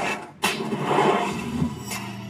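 Soundtrack of a film playing through the van's in-car audio system: sound effects and music with no dialogue, with a sudden loud hit about half a second in.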